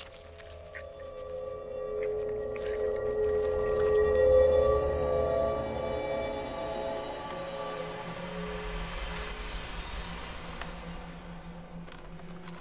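Horror film score: sustained, eerie held tones that swell to a peak about four seconds in and then slowly fade. A rising hiss-like wash builds in the highs near the end.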